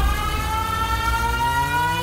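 A siren-like sound effect in the dance music mix: a tone with several overtones, rising slowly and steadily in pitch over a low rumble.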